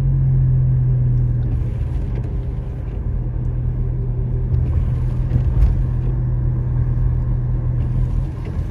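A car driving at low speed, heard from inside the cabin: a steady low engine hum over rumbling tyre and road noise.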